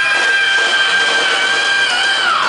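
Live rock band playing, with one high note held steady over the band.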